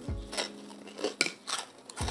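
Knife and fork clinking and scraping against a plate while cutting food, a few sharp clicks spread through the moment.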